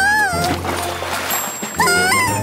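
Cartoon soundtrack: background music with a short, high, sliding wordless cry at the start and another near the end. Between the cries comes a rush of noise, a water-gush sound effect.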